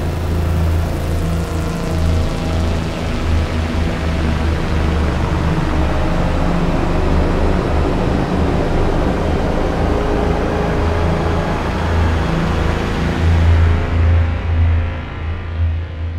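Behringer DeepMind 6 analogue polyphonic synthesizer playing a sustained ambient pad: a held chord over a deep low drone, with a dense, grainy texture above. The upper part of the sound dies away near the end as the keys are released.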